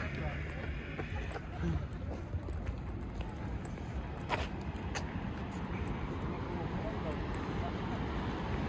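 Outdoor ambience on a phone microphone: a steady noisy bed with low wind rumble on the microphone, faint voices in the background and a few light clicks.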